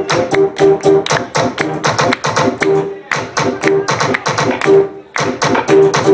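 Loud electronic dance music from a club DJ set, chopped into a fast, stuttering run of short repeated notes and sharp stabs.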